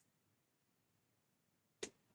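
Near silence broken by a single short, sharp click near the end.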